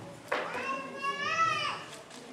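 A young child's voice: one high-pitched, drawn-out call that starts suddenly and lasts about a second and a half, rising and then falling in pitch.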